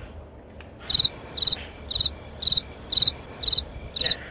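Cricket chirping, about two short trilled chirps a second, starting about a second in: the 'crickets' sound effect for an awkward silence after a joke falls flat.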